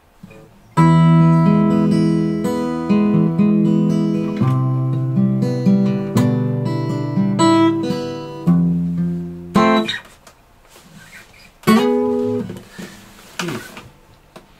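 Acoustic guitar fingerpicked, notes plucked one after another over a changing thumbed bass and left to ring. It starts about a second in and runs until about ten seconds in, then, after a pause, a short group of notes sounds near the end.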